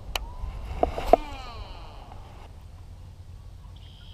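Baitcasting reel: a click just after the start, then two sharp clicks about a second in, followed by a whir that falls in pitch and fades over about a second and a half as the spool spins down.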